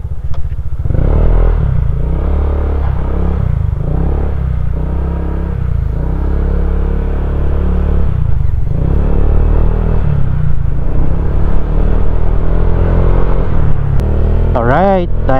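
Honda PCX 150 scooter's single-cylinder engine pulling away and picking up speed, heard with a heavy low rumble on the helmet-mounted camera. The sound rises sharply about a second in and then stays steady.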